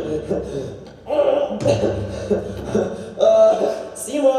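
An actor's muffled laughing and gasping through a gas mask, in bursts: the character is struggling with a gas mask that won't come off.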